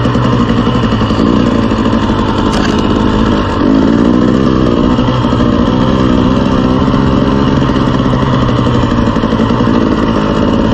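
KTM 300 two-stroke dirt bike engine running at low trail speed, heard close from a camera on the bike. The engine note dips briefly about three and a half seconds in, then picks up again under throttle.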